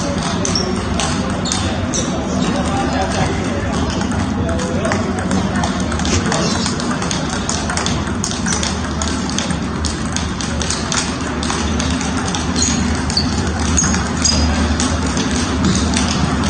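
Table-tennis balls clicking off paddles and tables in quick, irregular succession from several tables at once, over voices and music in a large training hall.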